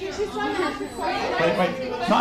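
Speech only: voices talking over one another, the words unclear.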